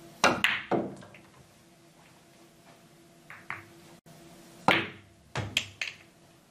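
Pool cue striking the cue ball, followed by sharp clacks of pool balls hitting each other and the rails. There is a quick cluster of three clacks just after the start, two faint knocks a little past the middle, then a hard clack and a quick run of three more near the end.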